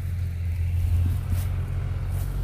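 Steady low drone of a combine harvester's engine working through an oat field.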